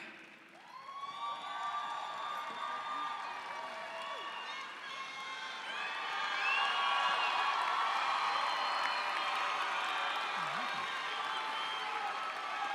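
Large arena crowd cheering and applauding, with many whoops and shouts over the clapping. It builds from a brief lull at the start and swells louder about six seconds in.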